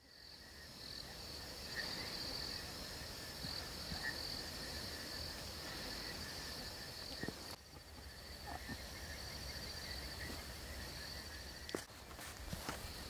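Night insects, crickets, chirping in a steady high trill, with a low rumble underneath. The sound fades in at the start and briefly drops out a little past halfway, with a few small clicks near the end.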